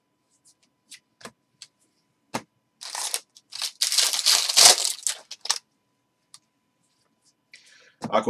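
A few light clicks of trading cards being handled, then a foil trading-card pack wrapper torn open and crinkled for about three seconds.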